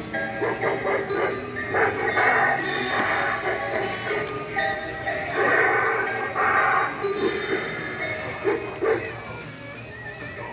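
Cymbal-clapping monkey animatronic running its routine: recorded music with animal-like shrieks and cymbal crashes, played as its arms swing the cymbals.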